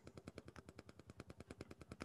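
Faint, rapid, evenly spaced ticking, about ten clicks a second.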